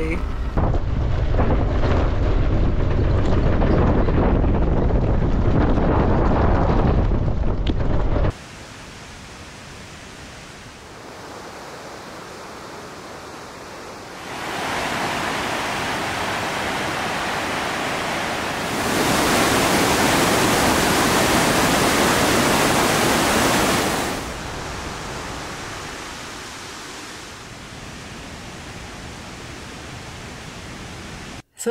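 Wind buffeting a microphone on the outside of a van on a gravel mountain road, with low rumble; it cuts off about eight seconds in. After that comes the steady rush of a rocky mountain creek, which grows louder in two steps around the middle and then eases.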